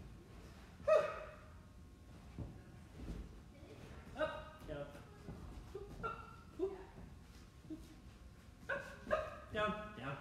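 A man's short grunts and wordless exclamations, several in a row, from the effort of walking on his hands, with soft low knocks of hands on a gym mat between them.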